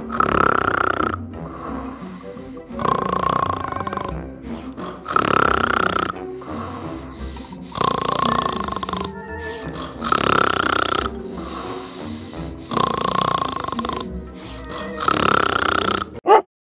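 A man snoring loudly and regularly, one long snore about every two and a half seconds, seven in all, over background music.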